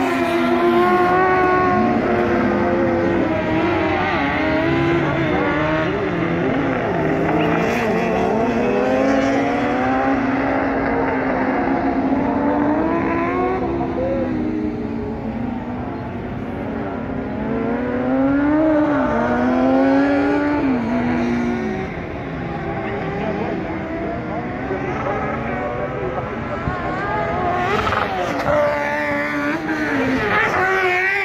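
Several motorcycle-engined kart cross buggies racing on a dirt track, their engines revving high. Overlapping engine notes climb and drop as the karts accelerate, shift and lift off through the corners.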